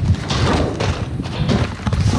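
A plastic dumpster lid being lifted open with a thud near the start, followed by irregular knocks and rustling as a large cardboard box scrapes against the lid and bin.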